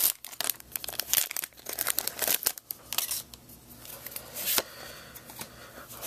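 Foil wrapper of a Pokémon Dragons Exalted booster pack crinkling and rustling as the cards are pulled out of it: dense irregular crackles for the first three seconds, then quieter handling with a single sharp click about four and a half seconds in.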